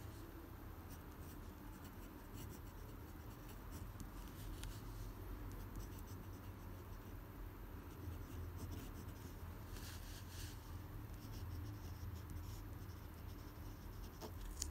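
Pen nib scratching across paper in short, irregular strokes with brief pauses between them as cursive words are written. The scratching is faint, over a low steady hum.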